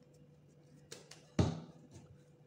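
A soft thump of a ball of bread dough being set down on a silicone baking mat about a second and a half in, after a couple of faint taps.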